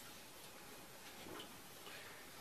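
Very quiet room tone with a few faint clicks.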